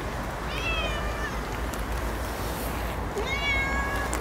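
Siamese cat meowing twice: a short high meow about half a second in, slightly falling, and a second one near the end.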